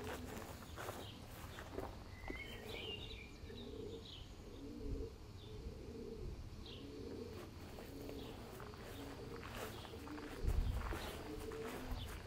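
Pigeons cooing over and over in a low, repeating call, with a few higher bird chirps about two to four seconds in and light footsteps. A brief low thump comes near the end.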